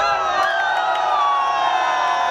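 Several men's voices cheering together in one long held yell that slowly falls in pitch, a goal celebration.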